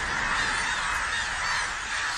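A large flock of birds taking flight and calling all at once, a dense clamour of many overlapping cries, as if startled by gunfire.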